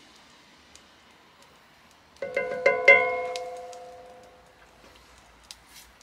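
Stainless steel mixing bowl set down on a hard surface, clinking about four times in quick succession as it settles, then ringing out and fading over a second or so.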